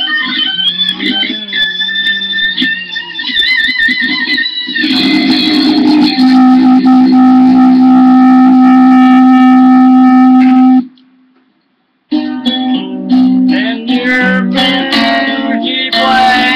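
Electric guitar played: wavering, bending high notes for the first few seconds, then a loud note held for about five seconds that cuts off suddenly into a second of silence, followed by quick runs of notes.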